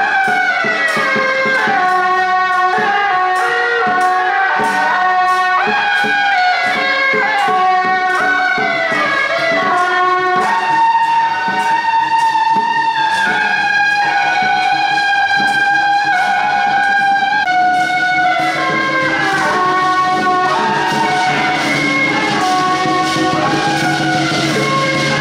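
Suona (Chinese double-reed horns) playing a loud, bright temple-procession melody with sliding notes, over a steady percussion beat.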